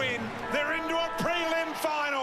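An excited football commentator's voice over a music bed of sustained chords.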